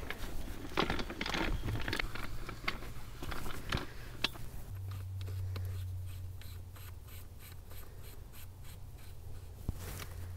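Hands working a hose reel cart and a brass in-ground faucet: scraping and sharp knocks at first. From about halfway, faint, evenly spaced ticking follows as the hose coupling is worked onto the faucet, over a steady low hum.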